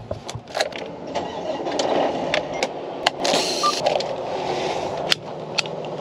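Semi truck air brakes hissing in a short burst about three seconds in as the yellow parking-brake valve on the dash is worked, over the steady running of the truck. A few sharp clicks.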